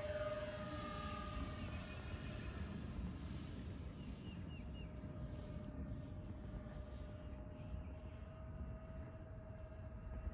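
Electric motors and propellers of a twin-motor RC airplane on skis whining steadily as it lifts off and climbs away, the pitch rising slightly just as it leaves the ground. A low rumble runs underneath.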